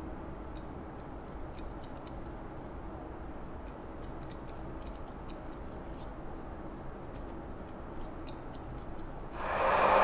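Barber's scissors snipping wet hair over a comb: a quick, irregular run of small clicks. Just before the end a hair dryer switches on and runs.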